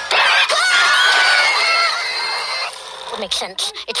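A girl screaming in fright: one long, high, held scream lasting about two and a half seconds, after which it drops away.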